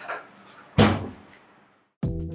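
A single loud thud about a second in, sudden and dying away over about half a second, after the last word of speech.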